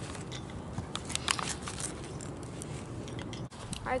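Scattered small clicks and crackles as a knife cuts around a Chinook salmon's gills and hands work the wet fish on newspaper.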